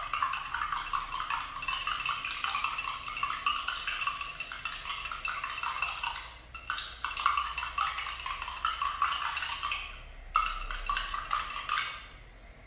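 A spoon clinking rapidly and continuously against a cup of water as sugar is stirred in to dissolve it, with two brief pauses, about six and ten seconds in.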